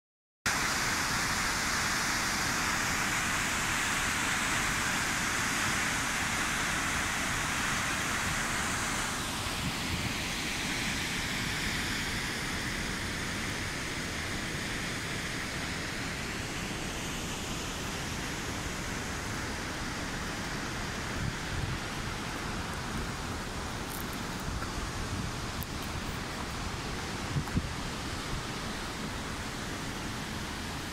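A waterfall's falling water rushing as a steady, even noise, a little softer after about nine seconds. A couple of light knocks come near the end.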